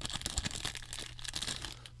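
Clear plastic wrapper around a bundle of trading card packs crinkling and crackling in the hands as it is pulled open, with many small irregular crackles.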